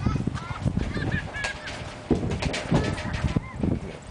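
Stacked plastic bread trays being pulled and shifted on a truck floor: repeated clattering knocks with short, high squeaks as plastic rubs on plastic.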